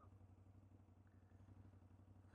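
Near silence, with only the faint, steady low hum of a Can-Am Outlander 850's V-twin engine idling.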